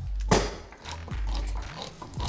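Handheld manual can opener cranking around a steel can: a sharp click about a third of a second in, then faint irregular clicks and scrapes, over background music with a steady low bass.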